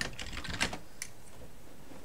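Computer keyboard keys being typed: a short run of keystrokes in the first second, entering a web search, then quiet.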